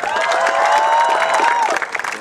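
Crowd of pilgrims applauding, with one long high-pitched note held over the clapping that dips and drops away near the end.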